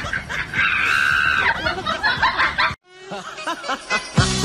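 High-pitched snickering laughter that cuts off abruptly about three seconds in, followed by a few short vocal sounds.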